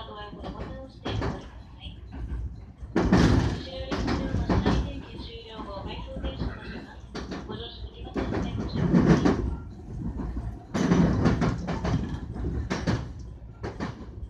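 Electric train running over rail joints and switches, with rumbling and clunking that swells three times, loudest about three, eight and eleven seconds in. A voice is heard faintly through it near the start and in the middle.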